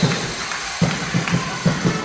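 A quick, uneven run of hollow thuds, five or six in about a second, each ringing briefly in a large sports hall.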